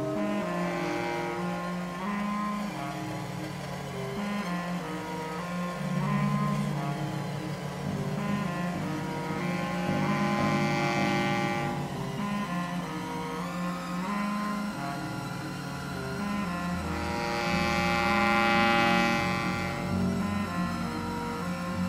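Live experimental band music: a clarinet and electric bass with electronics playing long, layered held notes that swell louder and ease back, loudest near the end.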